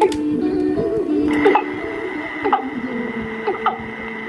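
Music with singing played back from a cassette tape, with a steady high tone joining about a second in. The playback is quiet here, which the owner wonders may be down to the tape itself.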